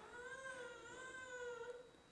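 A faint, drawn-out cry, a single wavering call of under two seconds that stops abruptly near the end.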